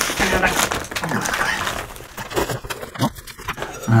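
A woman's voice making short murmurs without clear words, over the rustle and scrape of a large cardboard box being turned over in her hands.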